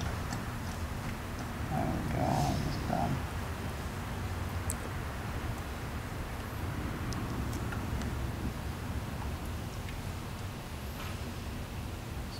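Engine oil pouring from a plastic bottle into a car engine's oil filler neck, a steady low pour with a few short gurgles about two to three seconds in as air gulps back into the thin-necked bottle.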